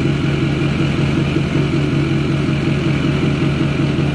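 LML Duramax V8 turbodiesel idling steadily through a 5-inch straight-pipe axle-dump exhaust.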